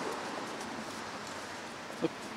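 Steady outdoor background noise, with faint rustling and small handling sounds as a fabric bag is rummaged through.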